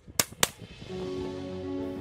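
A shotgun fired twice in quick succession, the shots about a quarter of a second apart, followed by background music with held notes.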